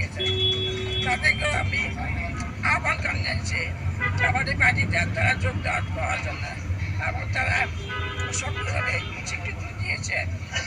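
A woman speaking, over a steady low rumble of road vehicles.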